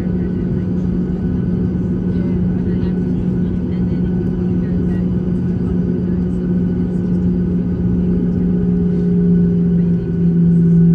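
Cabin noise of a Boeing 737-800 taxiing, heard from inside the cabin: the jet engines run at taxi power as a steady low rumble with a steady hum, growing a little louder near the end.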